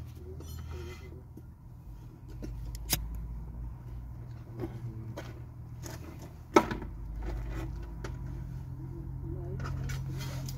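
Close handling noises of a wire harness and a roll of electrical tape, with two sharp clicks, the louder one about six and a half seconds in, over a steady low hum.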